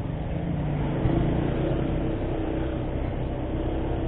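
Motorcycle engine running steadily as the bike rides along at low speed, with road and wind noise.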